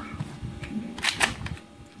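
Spring-powered airsoft pistol being handled and cocked, with small plastic clicks and a short rasping click of the slide about a second in.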